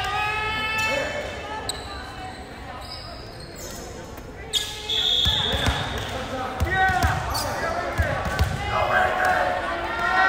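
Indoor volleyball play in a school gym: a short, steady whistle about halfway through, then ball contacts, sneaker squeaks on the hardwood floor and players' shouts, echoing in the hall.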